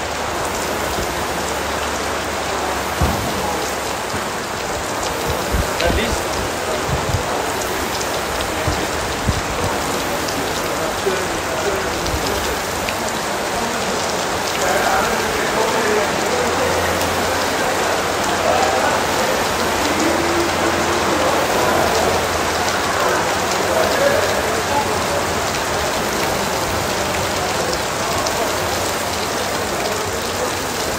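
Steady rain falling on a roof, an even hiss that holds without a break.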